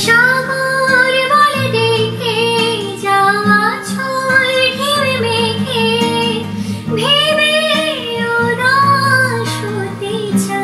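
A young woman singing a Bengali song in long, gliding held phrases over a guitar accompaniment.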